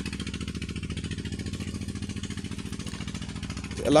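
A small engine running steadily, with an even, rapid pulse that neither rises nor falls.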